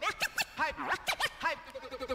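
Vinyl record scratching: a sound on the record dragged back and forth, heard as quick rising-and-falling pitch sweeps, several a second.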